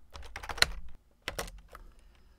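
Typing on a computer keyboard: a quick run of separate keystrokes, with a brief pause a little after the middle.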